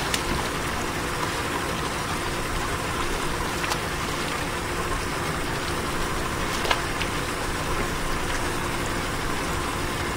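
A motor running steadily with a low, even hum, with a few light clicks about four and seven seconds in.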